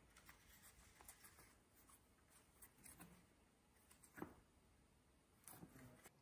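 Faint handling sounds of thick veg-tanned leather pieces being shifted and rubbed against each other on a stone slab: scattered light scuffs and clicks, the most noticeable about four seconds in and again near the end.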